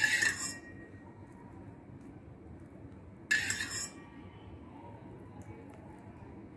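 A steel spoon clinks against a steel pan twice, about three seconds apart, as it scoops up tempering water to pour over the dhokla. Each clink is brief and ringing.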